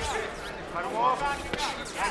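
Voices shouting from ringside over a kickboxing bout, with two sharp thuds of strikes landing: one right at the start and one about a second and a half in.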